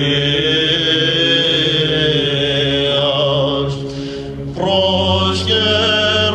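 Byzantine chant: a male cantor sings the idiomelon melody over a steady held drone (ison). After a short lull in the melody about three to four seconds in, the low held note comes back at a lower pitch.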